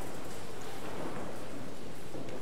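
A church congregation settling into the pews after being asked to sit: a steady rustling and shuffling haze without words.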